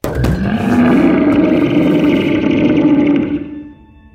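A film monster's loud roar, starting abruptly, rising a little in pitch and held for about three and a half seconds before dying away. Faint, sustained ambient music tones come in near the end.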